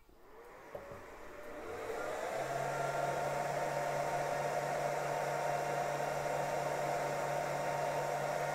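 Cooling fans of two portable laser engravers (xTool F1 and LaserPecker 4) spin up over the first couple of seconds, then run with a steady whir and a low hum while their blue diode lasers cut thin wood.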